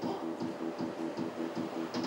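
Homemade coin-operated arcade machine running: an even, rapid pulsing of about five beats a second with a faint high click on each beat.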